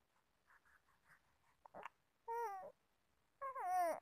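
A baby vocalizing: two short, high-pitched coos, the first about two and a half seconds in and the second near the end, each wavering and falling in pitch.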